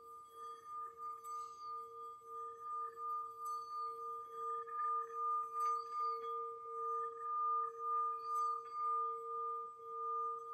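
Metal singing bowl rubbed around its rim with a wooden mallet, singing a sustained ring of a lower and a higher tone that wobbles about twice a second. The ring swells louder over the first half and then holds.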